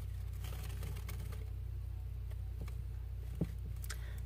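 Quiet room tone with a steady low hum and a few faint ticks, one a little louder near the end.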